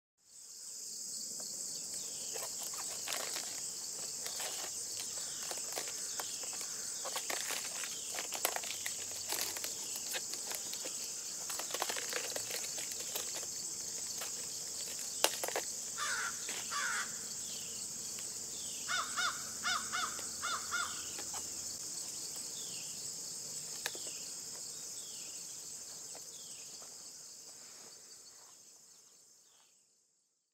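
A steady, high-pitched chorus of insects in a summer garden, with crackling and rustling of leaves as the cabbage head is cut and handled. A bird calls in a short series of notes past the middle, and the sound fades out near the end.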